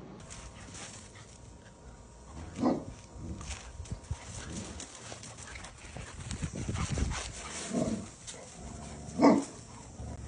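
A dog gives two short vocal calls, one about two and a half seconds in and a louder one near the end, among light clicks and thumps of movement.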